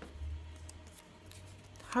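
Faint handling noise: a low rumble in the first second, then a few light ticks and rustles as a small paper fortune slip is held up. A voice starts right at the end.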